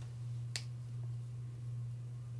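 A single sharp click about half a second in, as fine metal tweezers close on a small metal flower charm, over a steady low hum.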